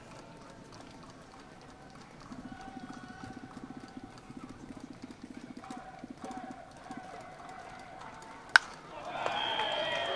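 Sharp single crack of a wooden bat meeting a pitched baseball, heard through faint, distant rhythmic crowd noise; right after it the crowd's voices swell.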